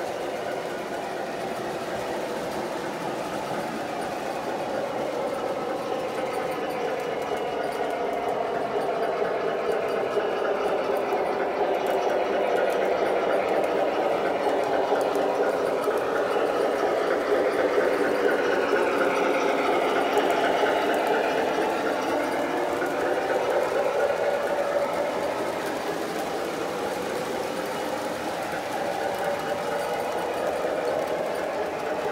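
An O gauge model freight train led by an MTH Alco RS-3 diesel locomotive running along three-rail track: the steady whir of the motor and the clatter of wheels over the rails. It gets louder about halfway through as the train passes close, then eases off.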